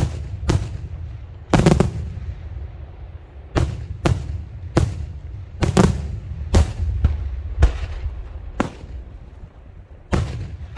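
Daytime aerial fireworks display: shells bursting overhead in a string of about ten sharp bangs at irregular intervals of half a second to two seconds, with a low rumble lingering between them.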